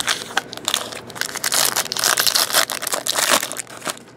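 Foil trading-card pack wrapper being torn open and crumpled by hand, a dense crackling that is loudest in the middle and dies down near the end.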